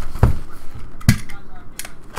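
Two sharp knocks about a second apart from a shrink-wrapped cardboard trading-card box being handled and set down on a table.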